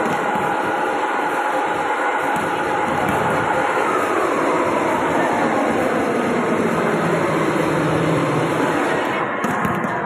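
Loud, steady din of a crowded indoor sports hall: many voices and general noise blending into one continuous wash, with a faint pitched line that may be music or chanting under it.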